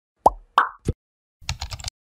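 Intro-animation sound effects: three quick cartoon pops, the first sliding down in pitch, followed about half a second later by a quick run of keyboard-typing clicks as text fills a search box.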